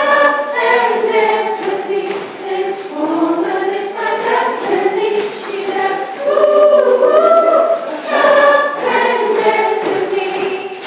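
A group of voices singing together, choir-like, with several pitched lines overlapping and no clear beat underneath.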